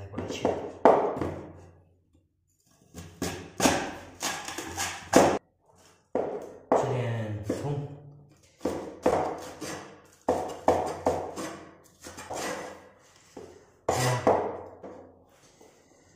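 A man talking over a few sharp knocks of a cleaver chopping scallions on a wooden cutting board.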